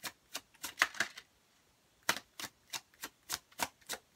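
Tarot deck being shuffled overhand: packets of cards tapping down onto the deck in a steady run of sharp clicks, about three a second, with a short pause about a second in.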